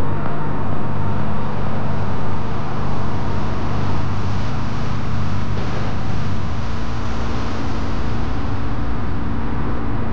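Car driving on a road: steady engine and tyre noise. The engine note shifts about six and a half seconds in.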